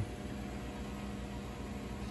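A steady low hum with a faint hiss, unchanging throughout: background room tone.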